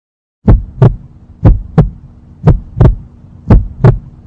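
Heartbeat sound effect: a low double thump (lub-dub) repeating steadily about once a second, four beats in all, starting about half a second in, over a faint steady hum.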